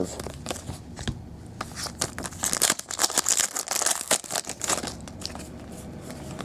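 Stiff trading cards being flipped through and slid against each other by hand: a run of small clicks and snaps, with a denser papery rustle in the middle.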